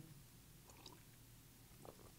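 Near silence, with a few faint sips and swallows as a man drinks beer from a glass.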